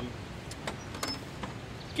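A few light clicks from a John Deere D105 lawn tractor's seat being tipped forward on its pivot, over a steady low background rumble.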